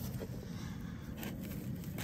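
Faint scrapes and light clicks of a plastic sprinkler head being handled and fitted back onto its riser, over a steady low outdoor background.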